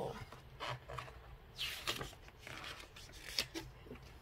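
A picture-book page being turned: a short paper rustle a little before the middle, with faint rubbing of fingers over the paper around it.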